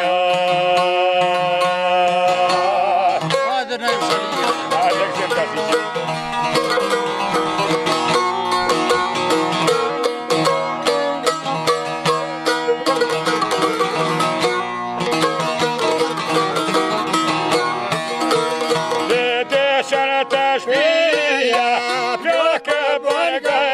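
Albanian folk music on two çiftelis, the two-stringed long-necked lutes, plucked in a fast running melody. A man's singing voice holds a long note for the first three seconds and comes back near the end.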